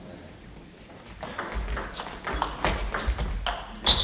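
Table tennis rally: a run of sharp clicks from the ball striking rackets and the table, starting about a second in, the loudest hits at about two seconds and near the end.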